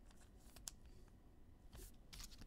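Near silence with a few faint rustles and soft clicks of a trading card being slid into a clear plastic penny sleeve, a little past half a second in and again near the end.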